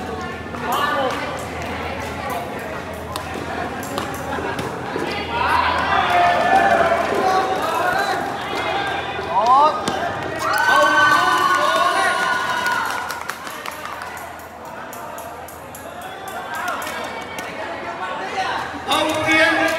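Voices shouting and calling out in a large echoing sports hall during a badminton rally, loudest in the middle. Sharp clicks of rackets striking the shuttlecock are scattered throughout.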